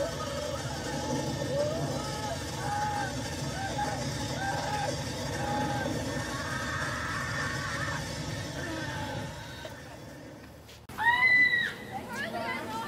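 Voices of several people chattering at a moderate level, then fading, followed by one loud, very high-pitched scream about eleven seconds in that lasts about a second.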